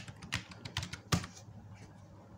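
Computer keyboard being typed on: a quick run of about eight keystrokes in the first second or so, entering a word, the last one the loudest.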